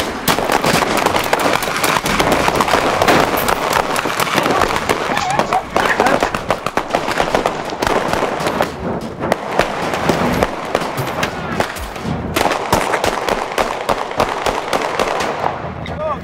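Dense, rapid popping and crackling that goes on without a break, with voices shouting over it.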